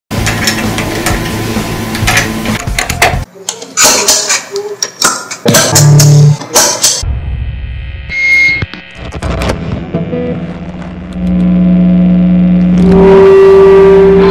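A jumble of short recorded noises and voice sounds in quick succession, then a loud, steady held tone in the last few seconds.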